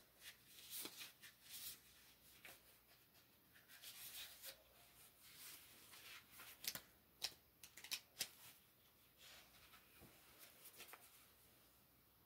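Faint rustling of paper sheets with scattered light ticks, as someone leafs through a book of sticker sheets looking for a sticker.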